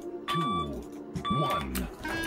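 Short electronic door beeps, two bursts about a second apart, over background music with low sliding notes.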